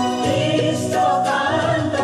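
A group of voices singing a slow song together in held notes, with instrumental accompaniment.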